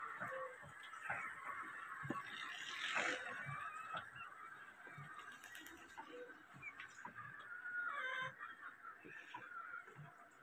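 Old black stationary diesel engine with a heavy flywheel running slowly, heard faintly as a string of irregular low thumps about once a second.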